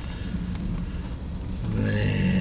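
Car running along a street, heard from inside the cabin: a steady low engine and road rumble.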